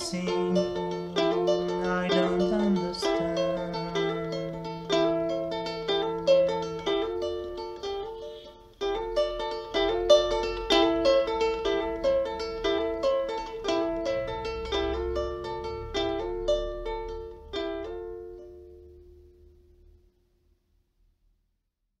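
A small acoustic string instrument, ukulele-sized, fingerpicked in a gentle repeating pattern as an instrumental outro. The pattern pauses briefly about eight seconds in, then resumes, slows, and the last notes ring out and fade to silence about twenty seconds in.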